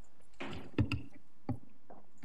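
A brief rustle, then four short dull knocks at uneven intervals over about a second, the first the loudest: handling noise, as of papers or a microphone being moved on a table.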